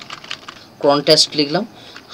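Computer keyboard typing, faint key clicks as a word is typed, with a man's voice starting a little under a second in.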